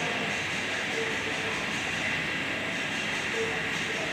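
Steady, unbroken rushing background noise with no distinct events, and faint voices in the distance.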